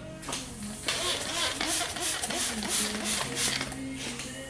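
A hand spray bottle misting liquid onto a plastic headlamp lens in quick repeated squirts, starting about a second in and stopping shortly before the end, over background music.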